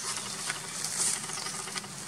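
Soft rustling and crackling of dry leaves and grass as a baby crab-eating macaque picks through them, over a steady high hiss of insects.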